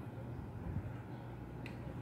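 A single sharp computer-mouse click about one and a half seconds in, over a steady low hum.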